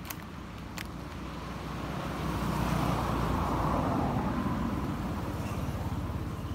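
A motor vehicle passing by, its noise swelling up to a peak in the middle and fading away, with a couple of faint clicks near the start.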